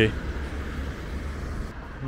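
Street traffic: cars driving past, a steady low road noise that thins out near the end.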